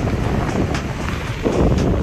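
Wind buffeting a phone microphone: a loud, rough, low rumble that runs without a break.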